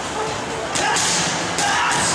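Boxing gloves striking focus mitts in sharp smacks: two quick hits just under a second in, then another just after one and a half seconds.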